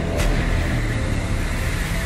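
Deep, steady rumble of a film sound effect for a huge alien spaceship, heavy in the bass, with a brief sharp hit just after the start.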